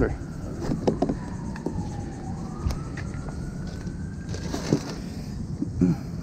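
A faint, distant siren wailing slowly, its pitch sliding down over about two seconds and then back up, under scattered knocks and rustles of hands handling gear close to the microphone.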